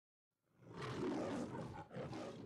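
The MGM logo's lion roar: a lion roaring, beginning about half a second in out of silence, swelling quickly and holding loud, with a brief dip near the end before it carries on.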